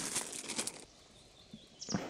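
Faint crinkling of a small plastic bag of nuts and screws being handled, lasting under a second, then a brief rustle near the end.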